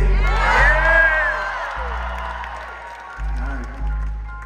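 Live band playing with deep, sustained bass notes that change twice, while the crowd whoops and cheers in the first second or so.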